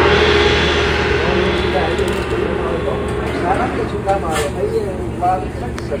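Shop ambience: indistinct voices of people talking at a service counter over a steady low hum. A rush of noise at the start fades over the first couple of seconds.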